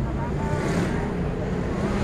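Outdoor urban ambience: a steady low rumble with faint voices of people around.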